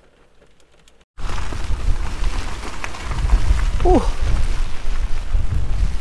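Heavy rain with wind gusting on the microphone: a loud, steady rush with deep, uneven rumbling underneath. It starts abruptly about a second in, after a near-quiet moment inside the car.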